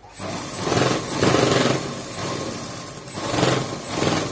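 Domestic sewing machine running and stitching a seam through fabric, its speed rising and falling in several surges.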